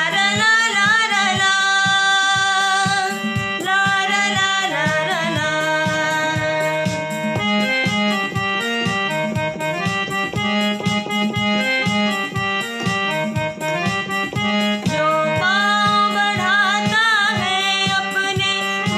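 A woman singing a Hindi group song (samuh geet) over instrumental accompaniment with a steady beat.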